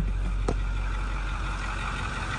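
Ford 6.4-litre Power Stroke V8 turbo-diesel idling steadily, heard from inside the truck's cab, with a single click about a quarter of the way in.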